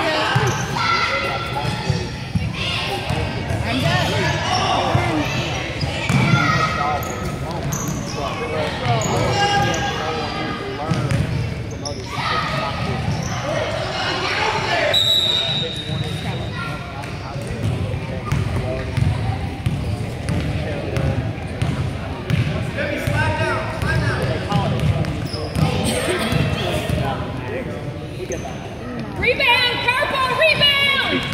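A basketball bouncing on a hardwood gym floor during a youth game, amid continual shouting and chatter from players and spectators in the large gym.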